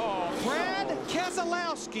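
Excited, raised voices of TV race commentators reacting to a last-lap crash, with race-car noise faint underneath.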